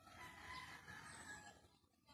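A rooster crowing once, faint, the call lasting about a second and a half.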